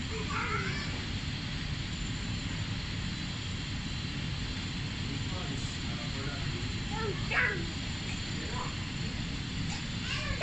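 A small child's brief, high-pitched squeals and vocal sounds, a few times, the clearest about seven seconds in, over a steady hum of shop background noise.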